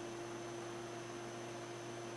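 Steady electrical hum with a faint high whine over a soft hiss: background room tone, with no distinct sound event.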